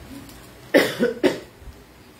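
A woman laughing briefly: three short, breathy bursts about a second in.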